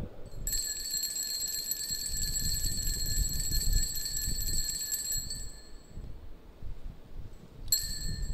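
Altar (sanctus) bells ringing at the elevation of the chalice during the consecration: a steady high ringing from about half a second in, fading out after about five seconds, then a brief second ring near the end.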